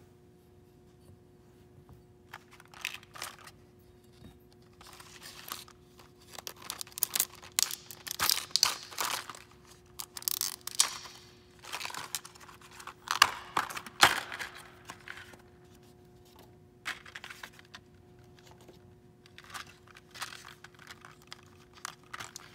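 Clear plastic clamshell packaging being handled and opened: irregular crinkling and crackling that starts a couple of seconds in and is densest through the middle, then thins to a few light clicks and rustles.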